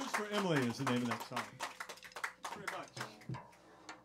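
Small audience clapping, thinning out over a few seconds, while a man speaks a few words into a microphone near the start.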